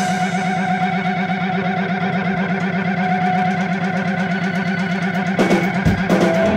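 A held, distorted drone from an amplified instrument run through effects, with a fast, even wobble in its pitch and no drums under it. Shortly before the end the sound shifts as the band comes back in.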